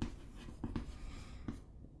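Chalk writing on a chalkboard: faint scratching with a few light taps as the chalk strokes across the board.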